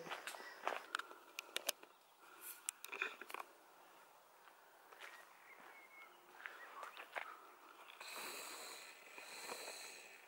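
Faint footsteps and small knocks of a handheld camera while walking on a path, stopping after about three and a half seconds. A faint steady hiss comes in for the last two seconds.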